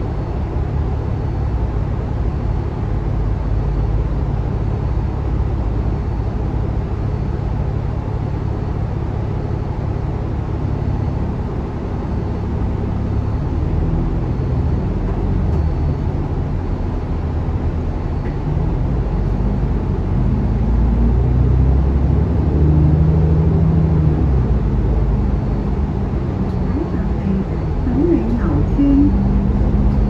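Lower-deck interior sound of an Alexander Dennis Enviro500 Euro 5 double-decker bus: a steady low diesel engine hum while the bus is held in traffic, growing louder and changing pitch in the second half as the bus pulls away.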